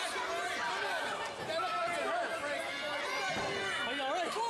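Crowd chatter: several spectators' voices talking over one another, none clear enough to follow, in a large hall.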